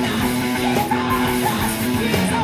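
Live rock band playing loud: electric guitar, bass guitar and drums, with cymbal hits about every second and a half.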